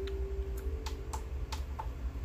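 Small plastic buttons on a CD player being pressed, about six light clicks over two seconds, to set the disc to loop. A steady low hum runs underneath.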